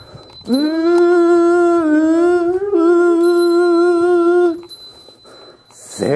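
Goeika, a Japanese Buddhist pilgrimage hymn, chanted in long drawn-out syllables: one note held for about four seconds, starting about half a second in with a slight rise and small wavers in pitch, then breaking off into a short pause.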